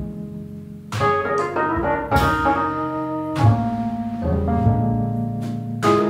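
Instrumental break of a small band playing live: keyboard over upright bass and drums, with sharp drum hits every second or so, all captured on a single ribbon microphone in one room.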